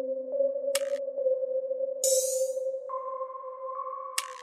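Electronic music: a steady, held synth tone with short hissing swooshes about a second in and about two seconds in, and a higher tone joining it near the three-second mark.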